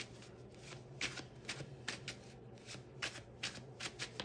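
A tarot deck being shuffled by hand: a quiet run of short, irregular card flicks, roughly three a second.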